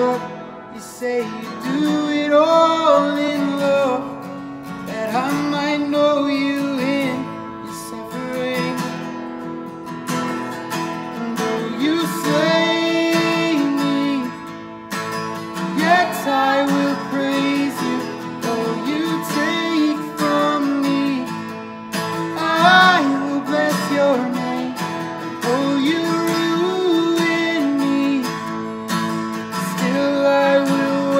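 A worship song sung to a strummed acoustic guitar.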